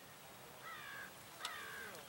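Two short, faint bird calls, each falling slightly in pitch: one about half a second in and one near the end, with a light click at the start of the second.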